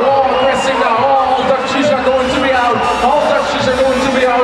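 A male race announcer's voice calling the race over the arena's public address, talking continuously.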